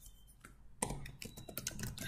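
Typing on a computer keyboard: after a near-quiet pause, a quick run of separate key clicks starts just under a second in.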